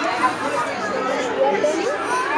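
Many children and adults talking at once: lively, overlapping party chatter.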